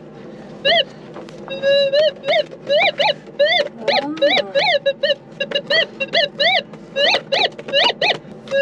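Metal detector signalling a buried metal target: a run of short warbling beeps, each rising then falling in pitch, about two to three a second as the coil is swept back and forth over the spot.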